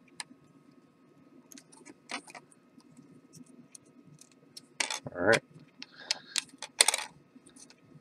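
Light clicks and taps of thin wooden craft sticks being slotted together at their notches and set on a wooden tabletop, with a louder cluster of knocks about five to seven seconds in.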